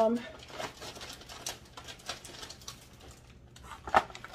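Scattered light clicks and rustles of empty plastic packaging and items being handled as they are taken from a bag, with one sharper click just before the end.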